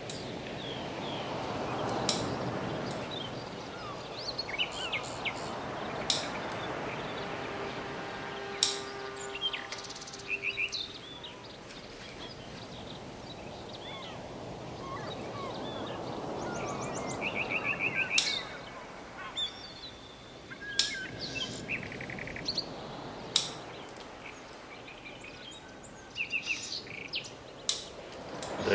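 Bonsai scissors snipping Japanese black pine needles: single sharp snips every few seconds, about seven in all. Birds chirp in short rapid runs in the background.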